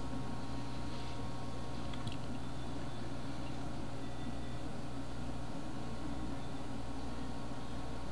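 Steady low hum of a computer and room background, with a faint click right at the start and another about two seconds in.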